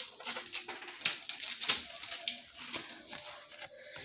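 Plastic Ziploc bag crinkling and rustling in irregular crackles as cookies are put into it and it is handled, with one louder crackle a little before halfway.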